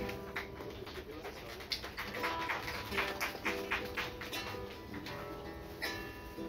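Acoustic guitar strummed live in a steady rhythm, with sustained notes ringing over the strokes.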